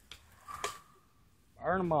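Speech: a voice calling a firing countdown, drawn out on the word "all", with a brief click just over half a second in.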